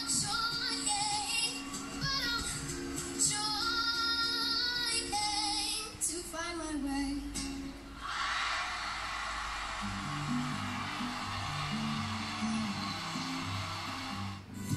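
A young girl sings with a ukulele accompaniment, heard through a TV's speaker. About eight seconds in, the singing gives way to audience applause, and low music notes join it a couple of seconds later.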